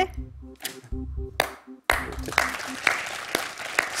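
Game-show suspense music with a low pulsing beat, cut off just before two seconds in. Applause follows and runs to the end, greeting a correct answer.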